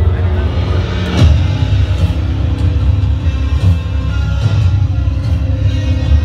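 Loud music with heavy, steady bass over the voices of a crowd, with one sudden loud hit about a second in.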